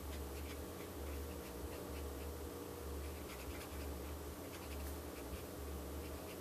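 Copic Sketch marker nib stroking over drawing paper in short, soft strokes while filling in a base colour, under a low hum that swells and fades about once a second.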